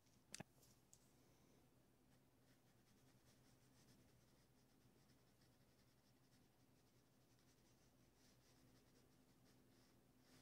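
Near silence: a paintbrush faintly scratching over a canvas in short strokes, with a single click about a third of a second in.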